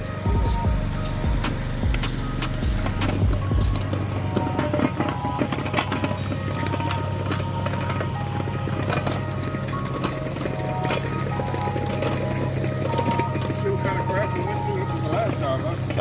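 Background music over the steady low drone of an engine: the small mule machine moving the building.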